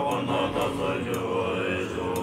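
Tibetan Buddhist monks chanting a mantra in deep voices, held on a low droning note with overtones that shift slowly above it. Two faint ticks sound through the chant.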